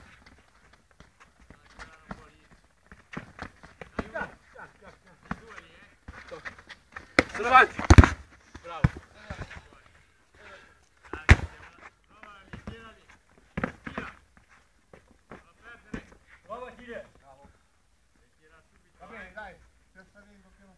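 Men's voices calling and shouting during a small-sided football game, loudest about eight seconds in. A few sharp thuds of the ball being kicked come through at intervals.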